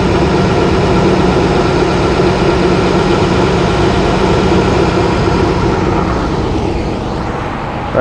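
Chevrolet Duramax 6.6-litre turbo diesel engine of a shuttle bus idling, heard up close from under the chassis as a steady drone with a low hum. It fades somewhat near the end.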